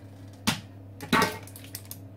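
A spatula knocking and scraping against a stainless steel mixing bowl as cake batter is scooped out into lined tins: a sharp knock about half a second in, a louder scrape just after a second, then a few light clicks.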